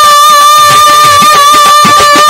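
Live Bengali Baul folk music: a long held high note wavering slightly over a drum beating a quick, steady rhythm with deep strokes that drop in pitch.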